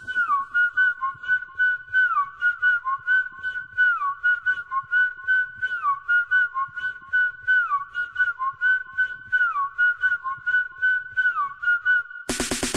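Whistle melody of a 90s dance track playing alone in a breakdown, with the beat dropped out. A looping riff of short high notes with downward slides repeats about every two seconds over faint ticking.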